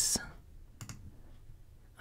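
A few faint clicks at a computer, the first two close together a little under a second in, over low room tone.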